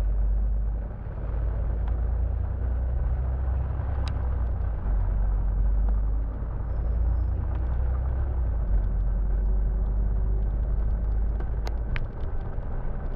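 Steady low rumble of a double-decker bus's engine and road noise, heard from inside on the upper deck as the bus drives along. A sharp click about four seconds in and another near the end.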